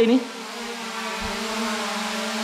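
SJRC F11S Pro 4K quadcopter hovering, its propellers making a steady, insect-like buzzing hum that grows a little louder over the first second or so.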